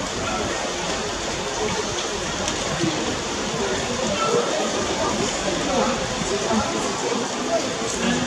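Indistinct voices of people talking, over a steady background hiss.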